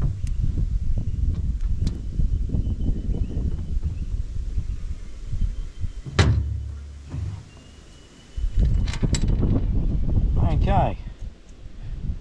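Wind rumbling irregularly on the microphone, easing off for about a second past the middle, with a few light clicks as the starter motor's solenoid parts are handled and fitted back together.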